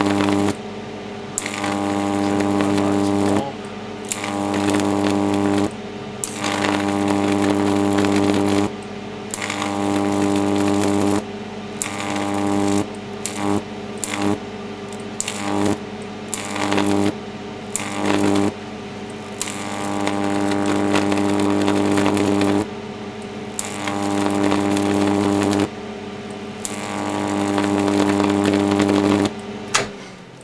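Large 8 kV, 375 mA neon sign transformer, run at full power with its current-limiting shunt removed, drawing a long high-voltage arc that gives a loud mains buzz. The arc breaks and re-strikes about a dozen times, the buzz dropping out briefly and coming straight back each time.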